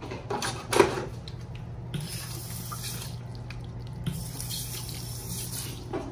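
Automatic sensor faucet running water into a sink basin, the stream starting about two seconds in. A brief loud sound comes just under a second in, over a low steady hum.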